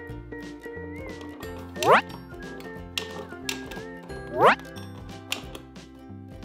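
Light background music with steady notes and a bass line, broken twice by a loud, quick rising whistle-like sweep, once about two seconds in and again about four and a half seconds in.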